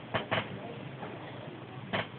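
Two quick, sharp taps close together, then a third near the end, over a steady hiss.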